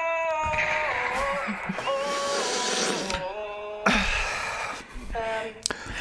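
A young man's untrained solo singing from a talent-show audition recording, several long held notes one after another with short breaks between them.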